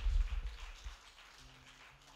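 Congregation clapping and applauding, dying away about a second in.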